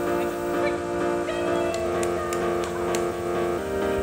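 Background music: steady repeating pitched notes, with chord changes partway through.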